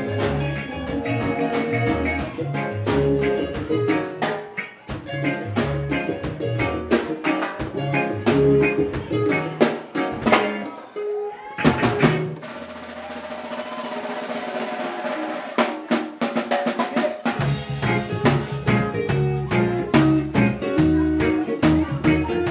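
Live reggae band playing an instrumental passage on drum kit, bass, electric guitar, keyboard and hand drums. About halfway through, the bass and beat drop out for roughly five seconds, leaving a held chord and a wash of cymbal, before the full band comes back in.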